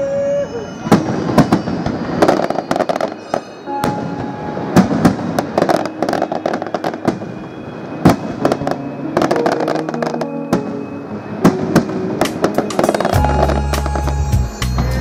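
Fireworks display: a rapid, irregular series of aerial shell bursts and crackles, with music playing underneath. A deep bass line comes in near the end.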